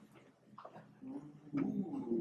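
A quiet room with a faint, low murmuring voice starting about a second in.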